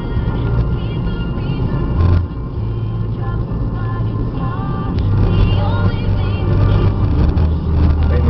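Road noise inside a moving car's cabin on a motorway: a steady low rumble from the engine and tyres, with music playing over it.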